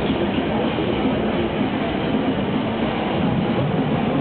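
Steady, dense background din of a crowded exhibition hall, an even rumble with no single voice or sound standing out.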